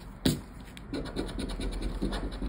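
A scratch-off lottery ticket being scraped with a round black scratching disc. A sharp tap comes about a quarter second in, then a run of quick back-and-forth scraping strokes from about a second in.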